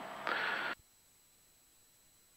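A short burst of hiss on the intercom audio feed that cuts off abruptly under a second in, leaving dead silence, like a squelch closing.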